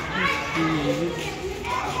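Voices of passers-by talking, with high-pitched children's voices calling out near the start and again near the end.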